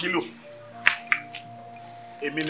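Soft background music with steady held notes, a brief fragment of a voice at the start, and two sharp clicks in quick succession about a second in.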